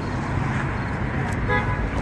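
Street traffic noise from cars on the road beside the sidewalk, with a brief flat horn-like toot near the end.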